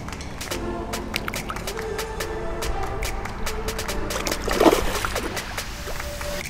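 Background music with steady held notes, with a splash a little before five seconds in as a bass is let go into the pond.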